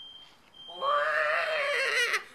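A teenager's high, wavering, drawn-out vocal wail, starting under a second in and breaking off at the end.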